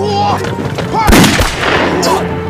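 A bomb blast in a film soundtrack: a loud burst of noise about a second in, deep and rushing, dying off over most of a second, over a dramatic music score.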